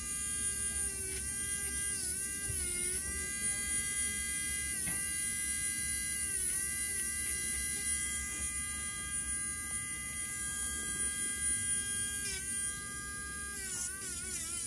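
Electric podiatry nail drill with a cone-shaped abrasive burr, running with a steady high whine as it grinds down a toenail. The pitch dips briefly each time the burr is pressed into the nail under load, about six times.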